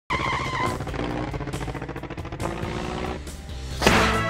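An intro piece of music mixed with a car engine sound effect, ending in a sudden loud hit near the end.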